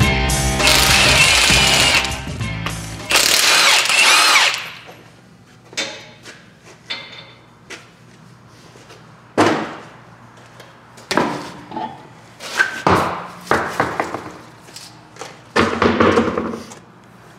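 Rock guitar music playing and fading out about four seconds in. Then short bursts of a power tool and knocks as the front wheels come off a lifted truck.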